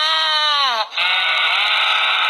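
A farm animal calling in long bleating cries that fall in pitch, with a short break about a second in.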